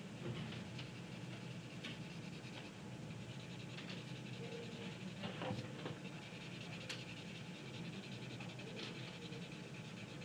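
Graphite pencil shading on drawing paper: faint, continuous scratchy back-and-forth strokes of the lead, over a low steady room hum, with a few light ticks of the pencil.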